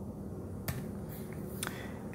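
Quiet room tone with a low hum, broken by two short clicks about a second apart.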